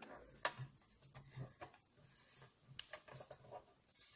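Faint handling of a metal pencil tin being turned over in the hands: a few light, scattered clicks and taps.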